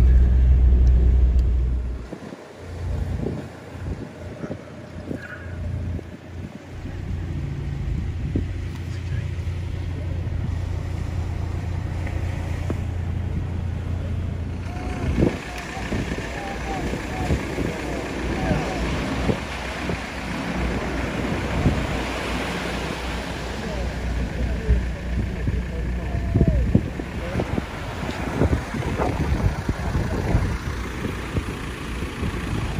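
Car's low rumble heard from inside the cabin while driving on sand, cutting off about two seconds in. From about halfway, surf and wind with several voices calling out.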